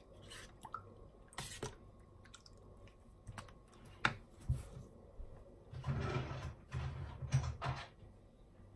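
Plastic spoon stirring a thick, creamy salad of gelatin cubes and coconut strips in a plastic bowl: wet squelches and a few light clicks of the spoon against the bowl. A louder burst of handling noise follows near the end.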